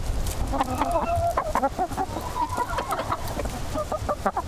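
A flock of domestic laying hens clucking, with many short calls overlapping over a steady low rumble.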